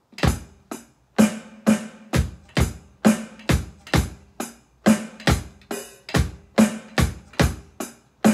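Yamaha electronic drum kit played in a rock beat: kick and snare hits in a steady run, about two a second.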